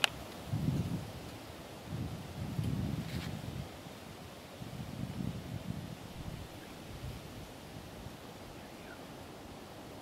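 Faint low rustling and rumble of wind on the microphone, coming in a few swells, with a soft click about three seconds in.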